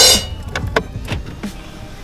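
Inside a car cabin with a steady low rumble: a sudden loud noise right at the start, then three or four light clicks over the next second and a half.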